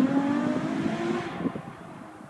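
Ferrari F12berlinetta's V12 accelerating away after an upshift, its note rising in pitch and fading into the distance within about a second and a half.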